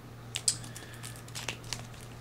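Two boxed decks of playing cards being handled and turned over in the hands, giving a few short, light crinkles and clicks of the packaging, with a steady low hum underneath.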